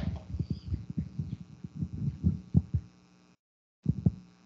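Microphone handling noise: a run of irregular low thumps and knocks as the microphone and its cord are handled. The signal drops out completely for about half a second a little after three seconds in.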